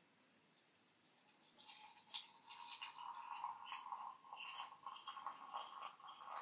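A thin stream of hot water poured from a high-held stainless steel kettle into a small clay teapot, a high pour that starts about a second and a half in and runs on with a steady splashing trickle.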